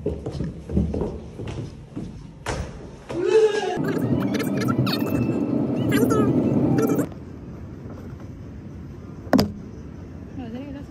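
Footsteps going down stairwell steps, a thud about every half second to second, for the first three seconds. Then loud voices talking for about four seconds, cutting off abruptly, followed by a quieter steady hum with a single sharp click near the end.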